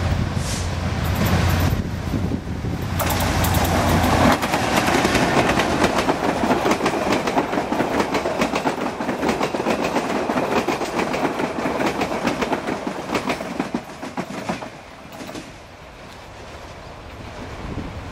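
GM G22CU diesel-electric locomotive passing with a low engine rumble. About four seconds in, the rumble gives way to a long run of rapid clicking as the coaches' wheels roll over the rail joints. The clatter fades out a few seconds before the end as the train moves away.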